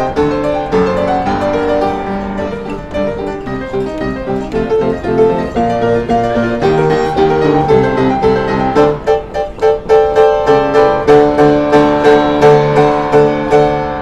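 Upright piano played by hand: a busy run of notes, then from about nine seconds in repeated chords struck in a steady beat.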